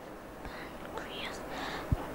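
Quiet room tone with faint, indistinct whispering, and a soft low knock just before the end.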